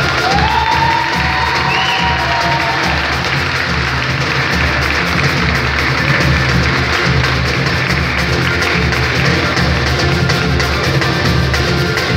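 Live samba played by a small group: a surdo bass drum keeping a steady beat under a snare drum and acoustic guitar, with people clapping and cheering.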